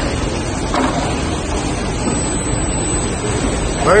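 Steady running noise of a plug injection moulding machine and the factory floor around it, with no distinct strokes or rhythm.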